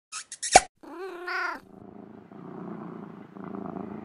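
Logo sound effect: a few quick pops, the last one loudest, then a cat's meow about a second in, followed by a cat purring steadily.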